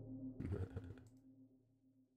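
Computer keyboard and mouse clicks about half a second in, over a low held software-synth note that fades away.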